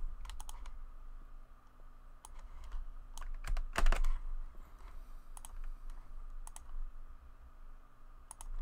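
Scattered single clicks of a computer keyboard and mouse, a few separate presses spread through the seconds with the loudest pair about four seconds in, over a low steady hum.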